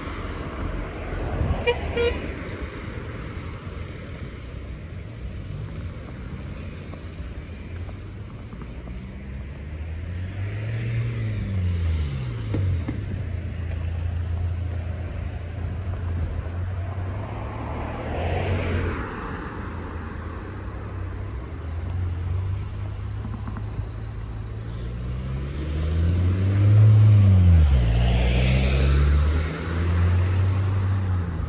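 Road traffic passing close by: cars go past one after another, their engine and tyre noise rising and falling as each goes by, loudest near the end. There is a short car-horn toot about two seconds in.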